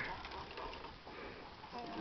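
Faint background noise with a distant person's voice, clearest near the end.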